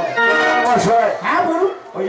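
A man's amplified voice on stage: one held vocal call of about half a second, then two shorter calls that fall in pitch.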